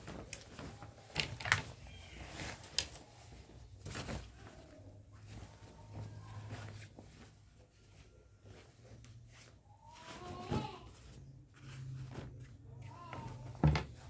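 Laundry being handled and folded: cloth rustling with a few sharp knocks and clicks, the loudest about a second and a half in and one just before the end.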